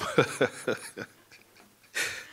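A man laughing close to a microphone: a few short, breathy laughs with falling pitch in the first second, then trailing off quietly.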